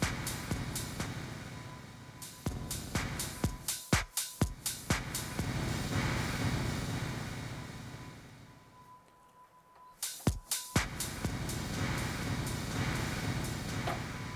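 House track with a four-on-the-floor kick played through a DJ mixer's beat reverb effect: the beat blurs into a washy reverb tail that fades almost to silence about nine seconds in, then the kicks come back about a second later. The reviewer judges this reverb to sound pretty bad next to a Pioneer DJ mixer's.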